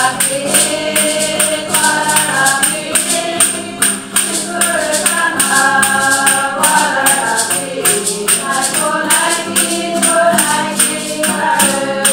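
A group of voices singing a hymn together, accompanied by acoustic guitar, with hand percussion keeping a steady beat.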